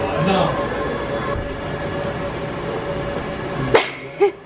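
Indistinct voices over a steady hum with a faint steady tone, cut off by a sharp click near the end.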